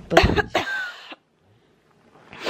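A girl's short, breathy burst of laughter close to the microphone that cuts off suddenly about a second in.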